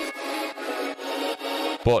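A bell sample in FL Studio, played dry from the piano roll: a bright, gritty tone full of overtones with no bass, held and then cut off abruptly just before 2 s.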